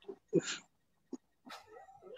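Short, broken bursts of a person laughing, heard through video-call audio.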